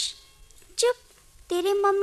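Speech: a short vocal sound about a second in, then a child speaking in Hindi from about halfway through.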